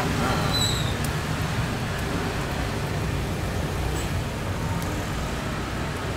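Steady low rumble of road traffic, with a brief high squeak just under a second in.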